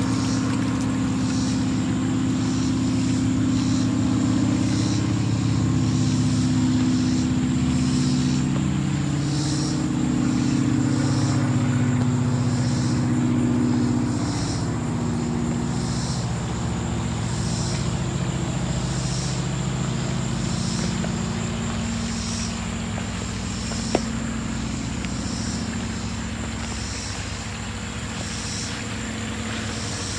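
A motor running steadily, its low pitch wandering slowly, with a thin high tone and short high chirps repeating about once or twice a second. A single sharp click comes near the end.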